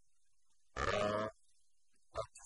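A man's voice making a single drawn-out syllable, like a hesitation sound, lasting about half a second near the middle.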